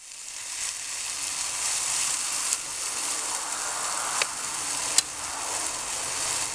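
Food frying in a pan on a portable camping stove: a steady sizzle, with a few sharp clicks as the utensil stirring it knocks against the pan.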